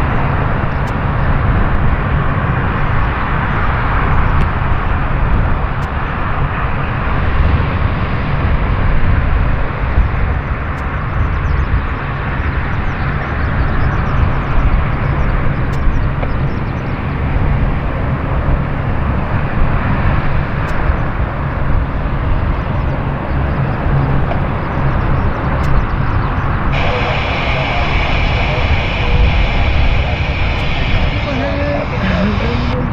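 ShinMaywa US-2 amphibian's four turboprop engines running, a loud steady drone of propellers and turbines. Near the end a higher-pitched edge joins the sound.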